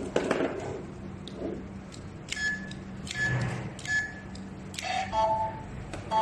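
Electronic arcade scoreboard beeping during a game countdown: three short, high beeps in the middle, then a lower, longer two-note beep about five seconds in, with a few light clicks and knocks from handling.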